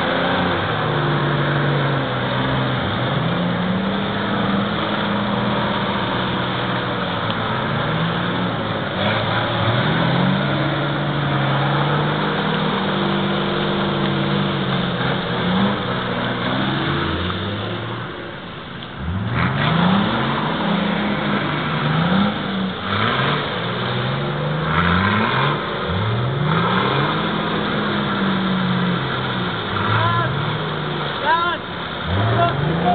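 Off-road 4x4 engine revving under load in deep mud, its pitch repeatedly climbing and falling. In the last third it gives a quick series of short rev bursts, one after another.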